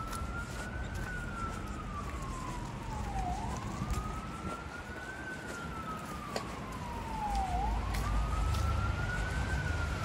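An emergency vehicle siren sounding a slow wail: each cycle sweeps up, then glides slowly down, about every four seconds, over a low rumble of city traffic.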